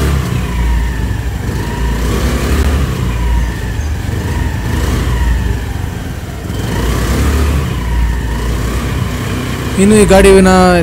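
Honda Dio scooter's single-cylinder four-stroke engine running, heard at the exhaust, its speed rising and falling several times.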